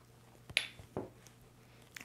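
Two brief soft taps, about half a second apart, from glass salt and pepper shakers with metal tops being handled.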